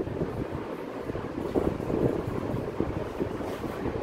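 Chalk scratching and tapping on a blackboard, over a steady rumble of air buffeting the microphone.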